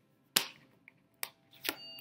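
Three sharp taps of tarot cards against a wooden tabletop as a card is picked up from the spread, the first tap the loudest.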